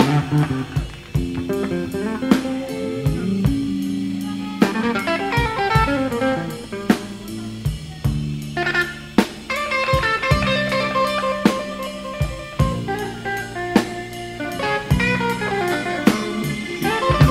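A band playing an instrumental passage of a slow blues ballad without singing: a guitar carries the lead over a drum kit.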